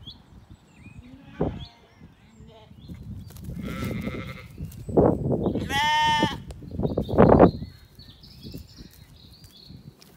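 A Zwartbles sheep bleats once, a single wavering bleat a little past halfway. Loud bursts of rustling close to the microphone come just before and just after it.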